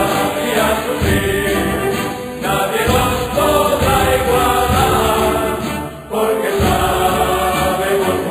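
Closing music with a choir singing held notes, dipping briefly about six seconds in before the voices come back.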